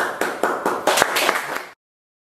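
A small audience clapping in dense, irregular applause that cuts off abruptly about three-quarters of the way through.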